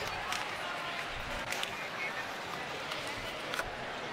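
Quiet sports-hall ambience: faint background voices with a few scattered light knocks.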